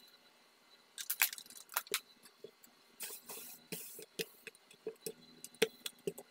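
Fabric being handled and laid out on a table: rustling and crinkling in irregular bursts with light clicks, starting about a second in.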